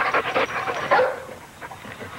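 A dog barking, loudest about a second in, then dying down.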